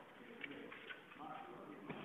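Indistinct, distant voices murmuring in a training hall, with three short sharp knocks: one about a quarter of the way in, one near the middle, one near the end.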